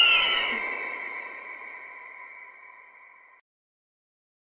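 A single ringing sound-effect hit that starts suddenly, rings with several steady tones and fades away over about three seconds, then cuts off abruptly.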